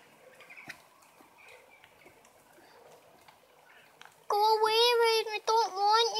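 Near quiet for about four seconds, then a girl's high voice comes in loudly with long, drawn-out notes that waver in pitch.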